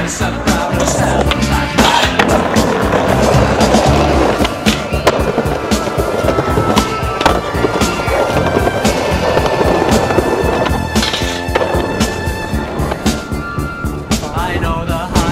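Skateboards rolling on concrete, with repeated sharp clacks and impacts of boards popping and landing on tricks, over a loud music track.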